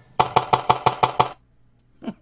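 A rapid, even run of about eight sharp knocks, roughly six a second, that stops abruptly a little over a second in.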